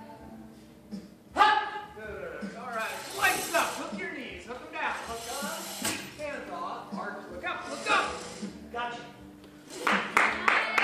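People's voices in a large hall, loudest about a second and a half in, with one sharp knock about six seconds in.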